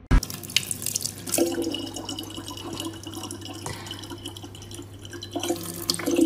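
Thin stream of tap water running into a large plastic water bottle: a steady splashing with a steady hum joining about a second and a half in. A sharp knock comes at the very start.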